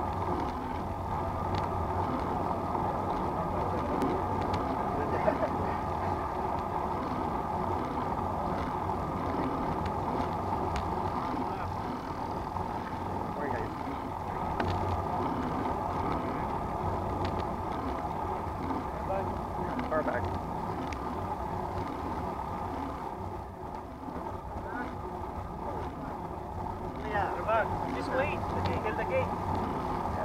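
Steady rushing wind and tyre-on-asphalt road noise picked up by a bicycle-mounted action camera while riding, with faint voices of the riders near the end.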